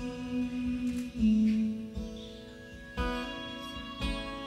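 Folk band playing live: acoustic and electric guitars sounding slow chords that ring out and fade. New chords are struck about a second in and again near three seconds.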